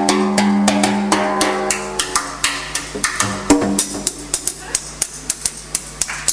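A live band's held chord dies away about two seconds in. After it, a sparse run of drum and percussion hits carries on, growing quieter.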